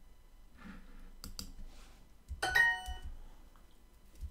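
Two mouse clicks on word tiles a little over a second in, then a short bright chime about two and a half seconds in: the Duolingo app's correct-answer sound, marking the translation as right.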